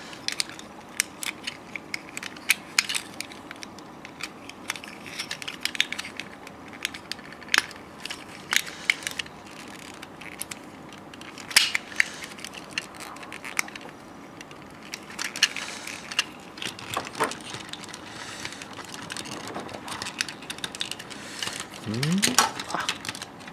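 Plastic parts of a transformable Valkyrie toy figure clicking and snapping as they are pressed together and adjusted by hand, in a string of irregular sharp clicks and small knocks.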